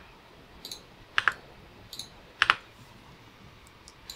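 A handful of sharp, separate clicks from a computer keyboard and mouse as on-screen widgets are selected and deleted, spaced irregularly, the loudest about a second in and again about two and a half seconds in.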